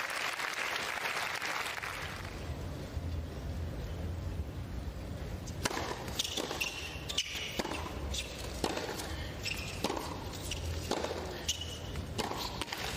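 Tennis crowd applause dying away, then a rally on a hard court: sharp racket strikes and ball bounces about every half second to second, with short high sneaker squeaks, over a low steady arena hum.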